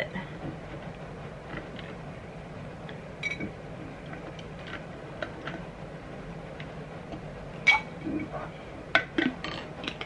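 Ceramic tea mugs and a spoon clinking: scattered light taps, one sharper ringing clink about three-quarters of the way through, and a quick run of clinks near the end.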